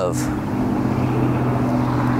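A steady low hum made of a few held tones that does not change, with the tail of a spoken word at the very start.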